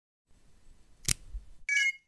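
Logo intro sound effect: a faint low rumble, a sharp click about a second in, then a short bright chime of several ringing tones near the end.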